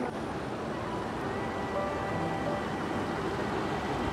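Soft background music over the steady rush of a small stream running between boulders.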